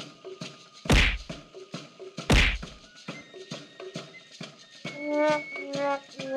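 Two loud whacking kick sound effects about a second and a half apart, striking the ball in a cartoon game, over light background music with short repeated notes.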